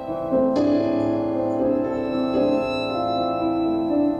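Stage keyboard playing a slow piano passage of sustained chords, with a new chord struck about half a second in.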